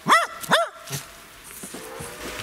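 Small dog giving two short, high barks about half a second apart in the first second.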